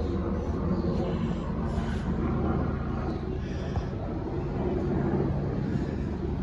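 A motor running steadily, heard as a low, even drone with a fixed pitch.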